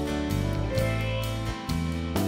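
Background instrumental music led by guitar, with plucked and strummed notes changing every fraction of a second.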